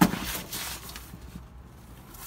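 Rustling of a dry bag's coated waterproof lining and fabric being handled by hand. It starts with a sharp click and fades out after about a second.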